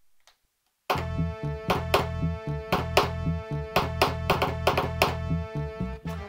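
A music track played from the RANE Performer DJ controller through Serato DJ Pro, stuttering: silent for about the first second, then restarted from its cue point again and again, a few times a second at uneven spacing, as the start/stop button is pressed with shift held.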